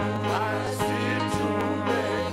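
Swahili gospel worship song sung into microphones by a small group of worship leaders over amplified instrumental backing with steady held bass notes.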